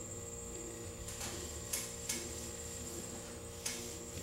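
Felt whiteboard eraser wiping a whiteboard: four or so short, faint scuffing strokes over a steady electrical hum.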